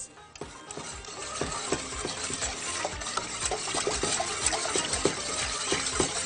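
A wire whisk stirring milk in a saucepan, beating starch and sugar into the cold milk. It makes a steady liquid swishing with frequent light clicks of the wires against the pan, growing louder over the first couple of seconds.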